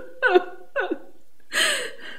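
A woman sobbing: three gasping cries, each falling in pitch, the last one longer.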